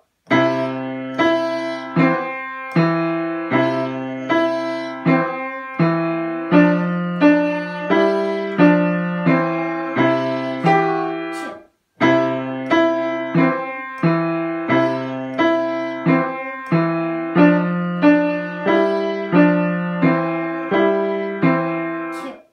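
Seiler upright piano playing a simple beginner piece in steady notes and chords, about one every three-quarters of a second. The playing stops briefly a little past halfway, then resumes.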